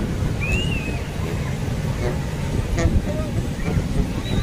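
Breaking surf with wind rumbling on the microphone, under distant voices of bathers and a few brief high cries.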